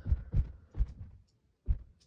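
A series of short, dull thumps at an uneven pace, about six in two seconds.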